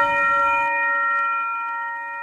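A single bell-like chime, struck at the start and ringing on with a steady, slowly fading tone.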